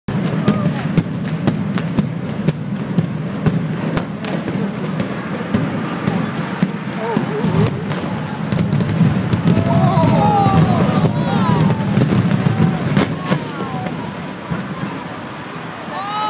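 Building implosion: a rapid, uneven series of sharp bangs from the explosive demolition charges over the first eight seconds or so, over a low steady rumble. From about ten seconds in, spectators' voices call out and whoop.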